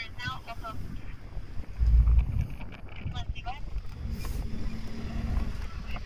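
Low rumble and wind on the microphone inside a car, with a loud low gust about two seconds in and a short snatch of voice. A low steady hum begins about four seconds in.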